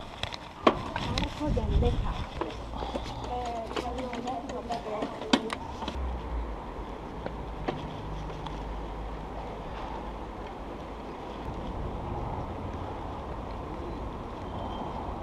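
Rolling bicycle ride: a steady rumble of tyres on pavement with wind on the microphone. Indistinct voices and a few sharp clicks are heard in the first few seconds.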